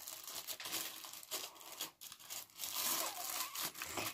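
Thin plastic wrapping crinkling and rustling in irregular crackles as it is handled and pulled open around a pair of glasses.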